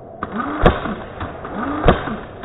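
Electric airsoft rifle (AEG) firing two single shots about a second and a quarter apart: each shot is a short rising and falling motor whir from the gearbox around a sharp crack.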